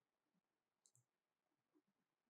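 Near silence: the sound is gated down to almost nothing.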